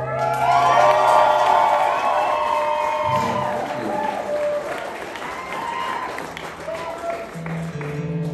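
Concert audience cheering and applauding, with scattered whoops, after an acoustic song ends; the last guitar chord rings out under it for the first few seconds, and the cheering slowly thins.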